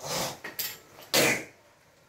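A woven sack being handled and pulled about on a tiled floor: three short rustling, scraping bursts, the loudest about a second in.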